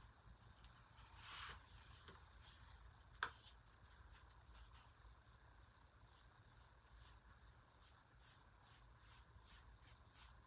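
Faint, scratchy strokes of a nearly dry paintbrush dragged across a painted wooden tabletop, settling about halfway through into a steady back-and-forth rhythm of roughly two to three strokes a second. A single sharp tap comes a little after three seconds in.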